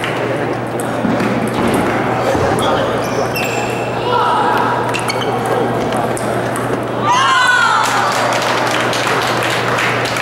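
Table tennis rally: the ball clicks sharply off paddles and table a number of times, under steady murmuring voices. About seven seconds in, a loud voice rises and falls as someone calls out.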